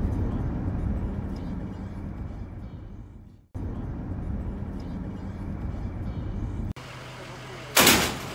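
Low, steady road and engine rumble from a car driving on a highway, broken off twice by edits. Near the end, over a quieter steady hum, there is one loud sharp bang.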